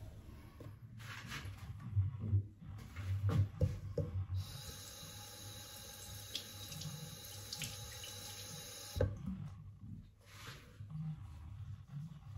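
Bathroom sink tap running into the basin for about five seconds, then turned off suddenly. A few knocks come before it.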